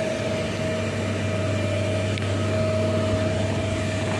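Tractor diesel engine idling steadily: a constant low hum with a steady high-pitched tone over it.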